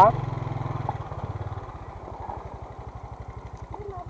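Motorcycle engine idling at a standstill with an even, quick low pulse, a little louder for the first second and a half before settling.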